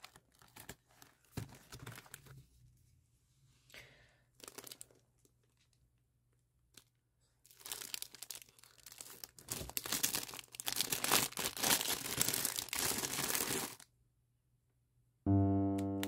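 Plastic packaging crinkling and rustling as hands handle plastic-wrapped packets, in scattered bursts at first and then a dense stretch for about six seconds in the second half. Piano-like background music starts near the end.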